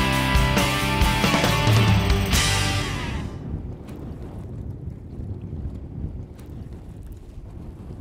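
Rock music with guitar that fades out about three seconds in, followed by low, steady wind noise on the microphone over open water.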